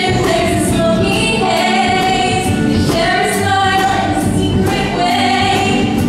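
Musical-theatre song number: a group of voices singing in chorus over instrumental accompaniment with a steady beat.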